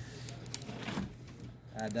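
Small wood fire crackling in a homemade rocket stove on its first test burn: a few sharp, scattered pops over a low steady hum.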